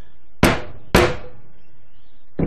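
A rubber mallet striking a soap stamp held on a bar of cold-process soap: two hits about half a second apart. They are not yet hard enough to press the design into the month-old soap.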